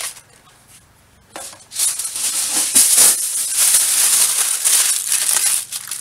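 Aluminium foil crinkling and crackling as it is scrunched into a ball by hand. It starts after a quiet second and a half and goes on for about four seconds.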